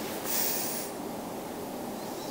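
A person's short, soft breath through the nose, lasting about half a second, shortly after the start, over faint steady room noise.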